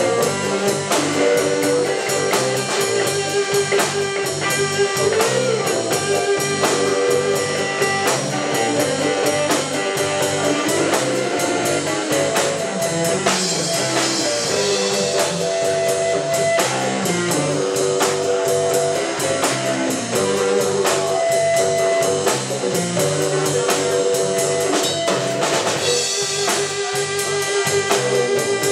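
Live blues band playing an instrumental stretch: an electric guitar plays held and sliding notes over bass guitar and a drum kit keeping a steady beat.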